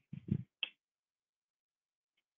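Board eraser knocking and scrubbing against a chalkboard: a quick cluster of short knocks and scuffs within the first second, ending in a sharp click.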